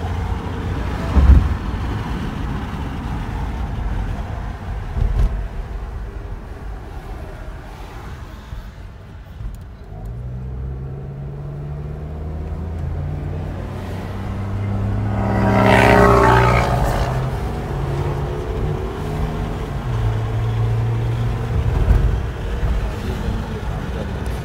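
A car driving, heard from inside the cabin: a steady low rumble of road and engine, with a deeper engine note coming in about ten seconds in and changing pitch in steps. A louder swell of vehicle noise comes about two-thirds of the way through.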